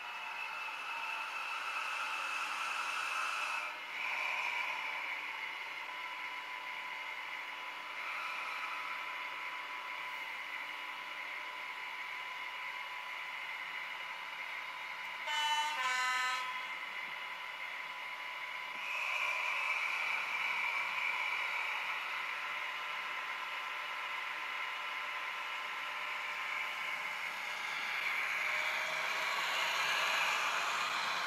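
Model-railway sound decoder playing a Class 43 HST power car's diesel engine through the model's small speaker: the engine runs steadily, a two-tone horn sounds briefly about halfway through, and the engine note rises and grows louder from about 19 s as the train pulls away.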